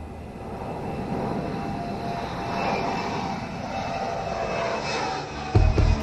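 Twin-engine jet airliner taking off and climbing away, its engines a steady rushing roar with a faint whine that slowly grows louder. Near the end a sudden low boom comes in as music begins.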